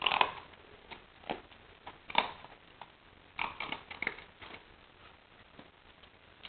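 A 3-month-old English Setter puppy mouthing at a treat lure in a person's hand, making short irregular sniffing and mouth sounds that come mostly in the first four and a half seconds.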